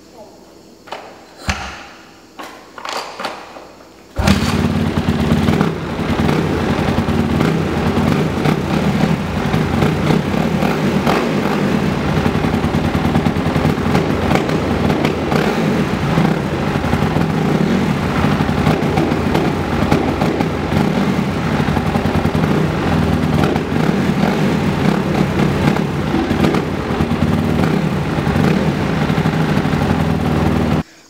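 Honda CRF250R four-stroke single-cylinder dirt bike being started: a few short sputters and pops, then the engine catches about four seconds in and runs loud and steady. The rider says it bogged down when revved, having been flooded by throttle given while it was off.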